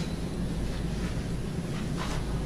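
Steady low hum of courtroom room noise, like ventilation picked up by the courtroom microphones, with a few faint rustles.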